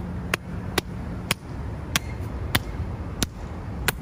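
A hand slapping a bare, tensed stomach: eight sharp smacks, roughly half a second apart, over a low background rumble.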